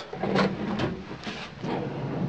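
Steel Stanley tool chest drawers sliding out on their ball-bearing slides, with a few short knocks as they are pulled open.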